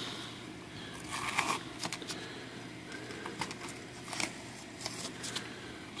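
Faint crackly rustles and small sharp clicks of painter's tape being peeled off a workbench and a plastic knife being picked up and handled, coming in scattered short bursts.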